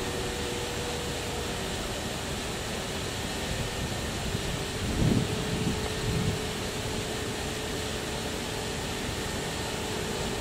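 Steady background hum with a faint held tone, broken by two short low rumbles about halfway through, the first the louder.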